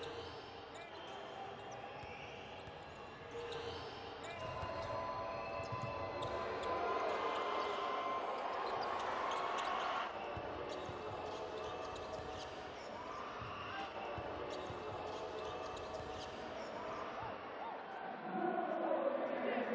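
Basketballs bouncing on a hardwood court in a large arena, as a run of short dull thuds, over crowd voices and hall noise that grow louder partway through.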